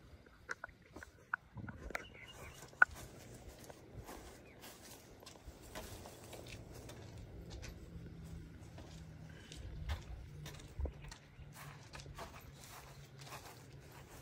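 Faint footsteps and small handling clicks, with one sharper click about three seconds in.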